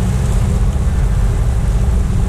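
Boat motor running steadily, a continuous low rumble as the boat moves along the riverbank.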